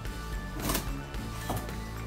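Background music with steady held tones, over two brief scraping rustles of styrofoam and cardboard as an accessory box is worked loose from its packing inside a monitor carton.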